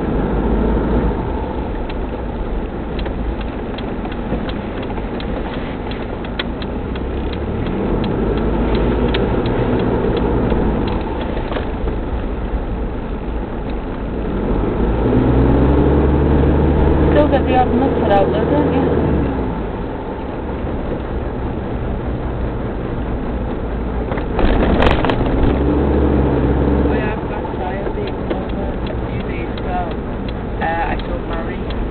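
Mitsubishi Pajero 4x4's engine and road noise heard from inside the cabin while driving on snowy streets. The engine note rises in pitch as it pulls away and accelerates, most clearly about halfway through and again near the end, with one brief sharp knock near the end.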